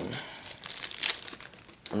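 Thin plastic packaging crinkling and rustling as a camcorder battery is taken out of its bag, with a few sharper crackles partway through.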